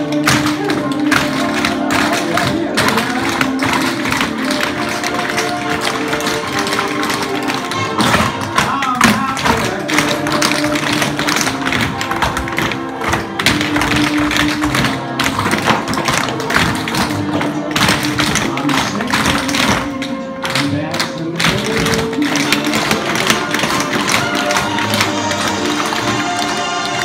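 Many tap shoes striking a hardwood floor as a group dances, the taps coming in quick rhythms over recorded music with a melody.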